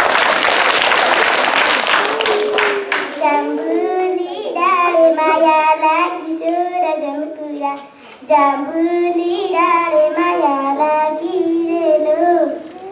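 Clapping for about three seconds, trailing off into a few single claps. Then a young girl sings a folk song unaccompanied, her voice rising and falling in long held phrases.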